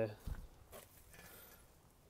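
A man's voice trailing off, then a single soft low thump about a quarter second in, followed by quiet background.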